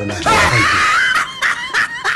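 A high-pitched human scream that wavers in pitch for about a second, followed by several short, high vocal bursts.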